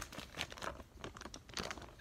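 Clear plastic packaging bag crinkling faintly as it is handled, in scattered light crackles.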